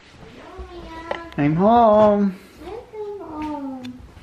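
A house cat meowing three times in long drawn-out calls, the middle one the loudest.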